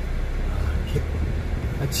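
Steady low rumble inside a van's passenger cabin, the engine and road noise of the vehicle.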